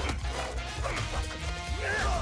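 Film trailer soundtrack: music with a steady bass beat under fight sound effects and short pitched cries, the loudest cry near the end.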